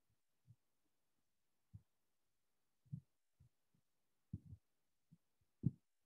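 Faint, irregular low thuds as a whiteboard is wiped clean with a duster, the strokes knocking the board, getting louder toward the end.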